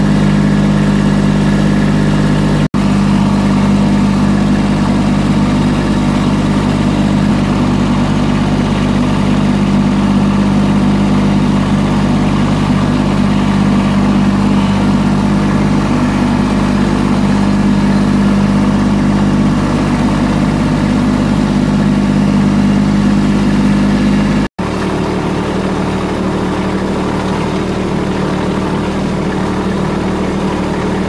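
Compact tractor engine running steadily while the tractor is driven, heard close from the operator's seat. The drone cuts out twice for an instant, and after the second break it carries on with a slightly changed tone.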